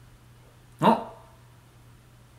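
One short, loud bark-like vocal burst about a second in, over a faint steady hum.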